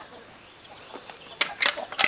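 Quiet outdoor background, then two or three short, sharp rustling noises about a second and a half in.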